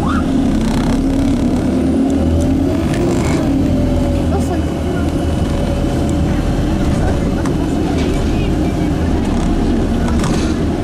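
Bus engine and drivetrain running while under way, heard from inside the bus: a steady drone with a pitched whine that drifts up and down a little.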